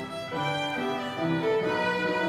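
Violin and upright piano playing a duet: a bowed violin melody over piano accompaniment, the notes changing every few tenths of a second, with a brief dip in loudness at the very start.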